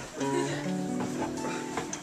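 Acoustic guitar being picked: a few notes sound a moment in and ring on over one another as a chord, with another pluck near the end.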